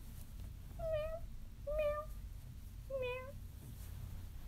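Toy kitten meowing three short times, about a second apart.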